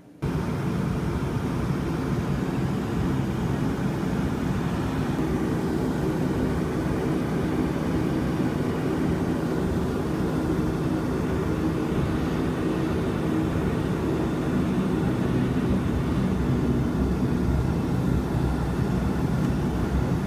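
Bombardier Q400's turboprop engines and propellers running, heard from inside the cabin while the plane moves on the ground: a steady drone with a low propeller hum, getting slightly louder near the end.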